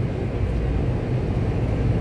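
Steady low rumble of supermarket background noise, with no distinct events.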